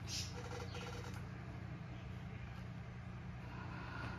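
Faint soft strokes of a foam brush spreading glue on leather, a brief swish near the start and again near the end, over a steady low hum.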